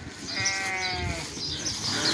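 A sheep bleating once, a single drawn-out call lasting under a second that falls slightly in pitch.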